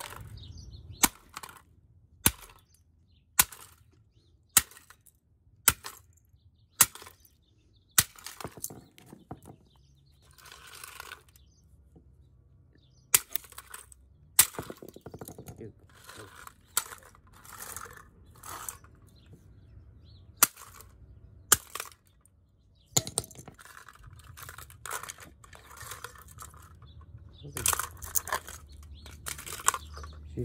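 Hammer blows smashing the black plastic receiver of an X10 wireless camera kit on concrete: eight sharp strikes a little over a second apart, then a few more later on. Between and after the blows, broken plastic pieces and circuit boards clatter and rustle as they are picked through by hand.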